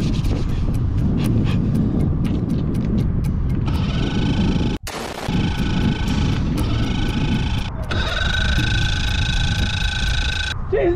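Background music with a quick ticking beat and held tones, over a heavy rumble of wind on the microphone. The sound cuts out sharply just before halfway and then comes back.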